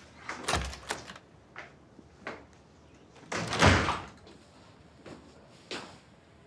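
A door being opened and then shut, closing with a heavy thud about three and a half seconds in, the loudest sound here. Lighter knocks and clicks fall before and after it.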